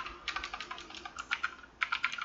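Typing on a computer keyboard: a run of quick key clicks, with a short pause near the end before the keys start again.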